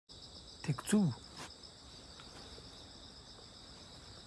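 Steady, high-pitched chorus of insects, droning without a break.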